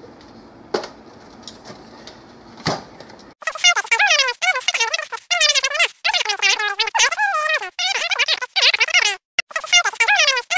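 Faint room noise with a few light clicks, then about three seconds in a loud, high-pitched, rapidly warbling voice-like sound takes over in short phrases.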